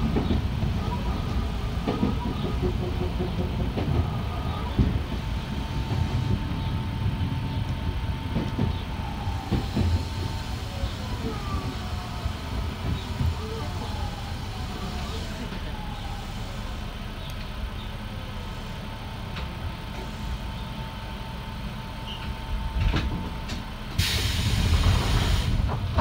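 Nankai electric commuter train heard from the driver's cab, running on the rails with knocks over rail joints, and slowing into a station as a falling electric whine comes and goes. A loud rushing hiss begins about two seconds before the end.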